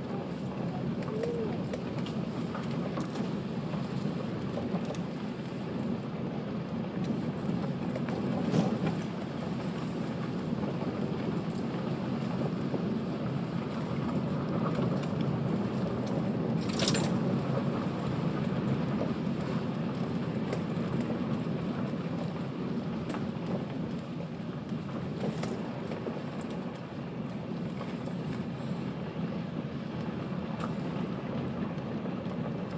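Car rolling slowly along a gravel track, heard from inside the cabin: a steady low rumble of tyres crunching over the stones, with a few sharp ticks of stones, the sharpest about halfway through.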